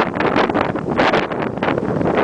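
Loud wind rush on the microphone of a camera carried by a rider moving downhill, mixed with irregular scraping of edges over packed snow.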